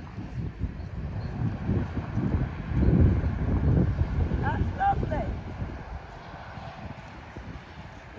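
Wind rumbling and buffeting on the microphone, strongest about three seconds in. A brief voice is heard about halfway through.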